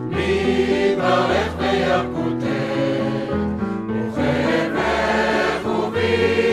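Mixed choir singing a Hebrew song in parts, accompanied by piano.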